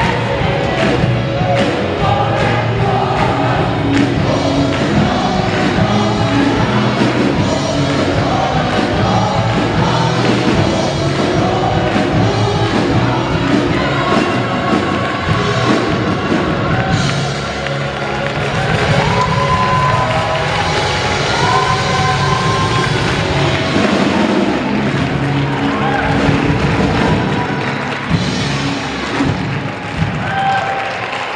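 Gospel choir singing an upbeat gospel song with a live band of drums and keyboard, the audience clapping along.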